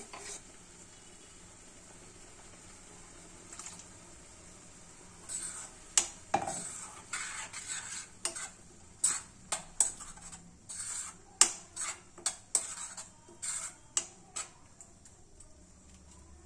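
A steel ladle stirring puréed spinach in a stainless steel kadhai, with a low sizzle from the pan. After a quiet first few seconds, the stirring brings irregular clinks, scrapes and sharp knocks of metal on metal.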